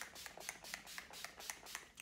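Urban Decay All Nighter setting spray pump bottle spritzed onto the face in quick succession: a run of short, faint hissing sprays, several a second.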